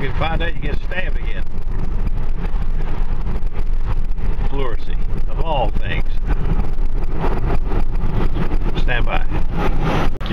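Car cabin noise while driving: a steady low rumble of engine and tyres on the road, heard from inside the car.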